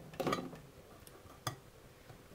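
Small objects handled close to the microphone: a brief soft knock about a quarter second in, then a single sharp click about a second and a half in, with little else between.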